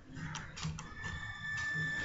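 Faint clicking of a computer mouse scroll wheel as a page is scrolled, a few quick clicks in the first second. A faint steady high-pitched tone sets in about a second in.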